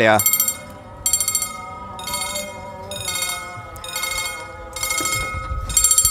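Mechanical level-crossing warning bells of the old EFACEC type ringing in repeated bursts about once a second: the crossing is active and warning of an approaching train.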